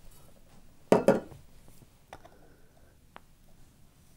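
Two sharp metal knocks close together about a second in, then a few faint clicks: a metal tamper and espresso portafilter being handled and tamped on the counter.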